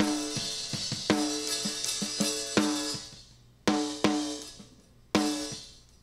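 Snare-top microphone track of a multitrack drum recording, gated by the bx_console expander/gate on threshold alone with hysteresis off. Snare hits come about once a second, with hi-hat and cymbal bleed in the first half. From about halfway through, the gate closes quickly after each hit, cutting the tail short.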